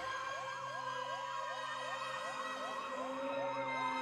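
Electronic siren-like warble that sweeps up and down about three times a second, over sustained drone tones in a psychedelic instrumental.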